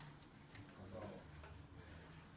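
Faint, irregular light clicks from the bicycle's rear-wheel quick release and axle fittings being handled, with a brief quiet 'oh, no' about a second in.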